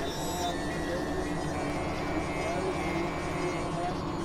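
Layered experimental synthesizer noise music: a dense, steady churning drone texture with scattered short gliding tones and a high held tone through the middle.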